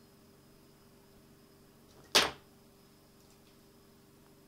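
A single sharp click from a hand tool at the workbench about two seconds in, against quiet room tone.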